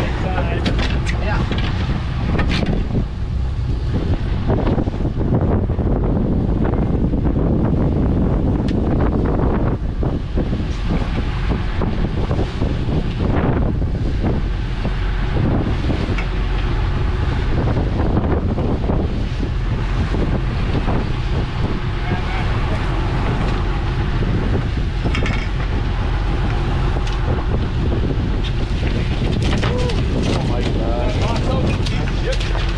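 Fishing boat running at sea: a steady engine drone mixed with wind buffeting the microphone and the rush of the wake.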